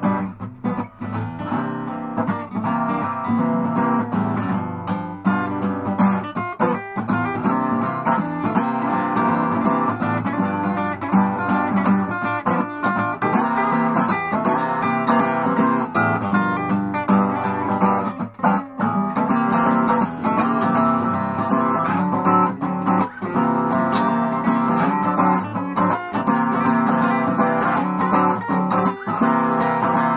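Acoustic guitar strummed and picked steadily in an instrumental passage, with no singing.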